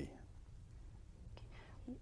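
Quiet pause in speech: faint room tone with a low steady hum, a small click about a second and a half in, and a soft breath-like sound near the end.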